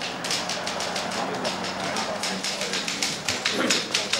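Typewriter keys clacking in quick, uneven strokes.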